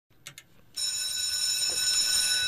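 Two faint clicks, then a track bell starts ringing steadily about three-quarters of a second in, the signal at a greyhound track that the hare is on the move before the start.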